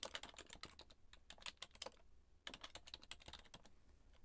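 Faint computer keyboard typing: two quick runs of keystrokes with a short pause about halfway through.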